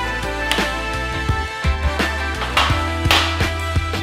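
Background music with drums and a bass line.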